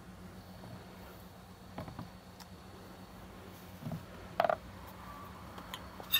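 Handling noises on a table: a few faint clicks, then one short, louder knock about four and a half seconds in, over a steady low hum.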